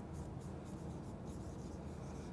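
Marker pen writing on a whiteboard: a faint run of short scratching strokes as the tip moves across the board.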